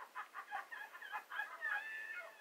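Soundtrack of a reality TV show playing from a flat-screen television across the room: a quick run of short, high-pitched calls or voices, with one longer held call near the end.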